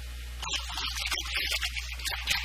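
A man lecturing in Urdu, resuming after a brief pause about half a second in, over a steady low electrical hum.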